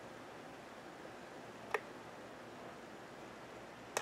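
Two single computer mouse clicks, the second about two seconds after the first, over faint room tone.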